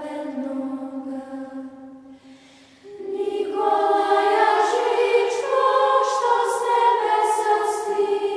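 Children's church choir singing a Serbian Orthodox hymn in unison: one phrase ends on a long held note that fades away, and after a brief pause about three seconds in, the next line begins, louder.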